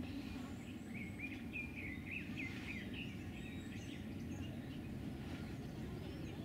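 A small bird chirping in a quick run of short high calls during the first half, over a steady low outdoor rumble.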